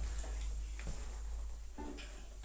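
Violin and viola being handled and moved, with a few faint knocks and a short pitched tone near the end.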